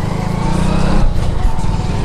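Steady low rumble of a moving vehicle's engine, with wind buffeting the microphone, while riding along a street.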